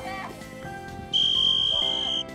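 A referee's whistle blown once: one steady, high, loud tone lasting about a second, over background music.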